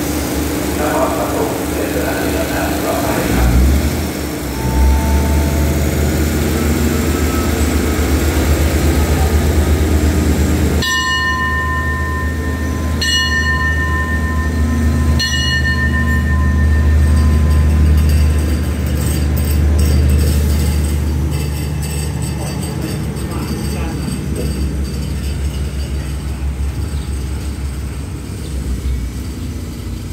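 Diesel multiple-unit express train running at the platform and pulling out, its engines' low rumble swelling as it moves off and then fading. Three ringing strokes, like a struck bell, sound about two seconds apart near the middle.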